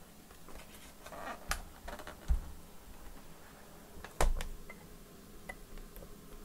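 A laptop being handled on a workbench: scattered clicks and light knocks, with two louder thuds about two and four seconds in as it is turned over and set down.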